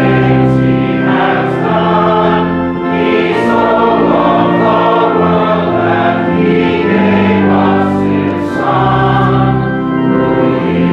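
Congregation singing a hymn of praise in unison over organ accompaniment. The organ holds chords that change every second or so.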